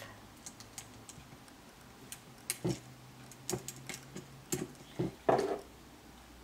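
Scattered light clicks and taps of hands working a small adhesive container and its cap and handling card stock pieces on a cutting mat, with a louder brief one about five seconds in.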